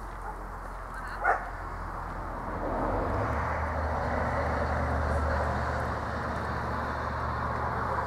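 A single short, sharp bark from a large dog about a second in. From about three seconds in, a steady low rumble runs underneath.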